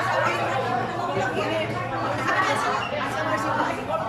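Background chatter: several people talking at once, overlapping and continuous, with no single voice standing out.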